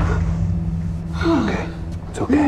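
A person gasping over a steady low rumbling drone. About a second and a quarter in there is a short vocal sound that falls in pitch.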